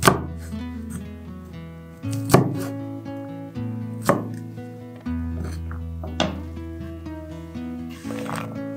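Kitchen knife chopping through garlic cloves onto a wooden cutting board: four sharp chops about two seconds apart, over steady background music.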